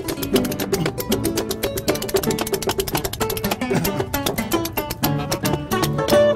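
Acoustic folk band playing an instrumental break: spoons clicking in a fast, even rhythm over plucked double bass and harp.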